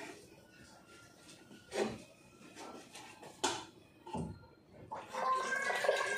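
A few knocks of kitchen things being handled at the counter, then water starting to run, filling a cooking pot, from about five seconds in.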